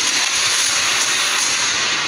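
A loud, steady hissing noise with no distinct tone or beat.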